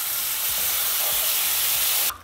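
Steady hissing sizzle of water poured into a hot skillet of oil-fried rice and tomato paste, flashing to steam as it hits the hot oil.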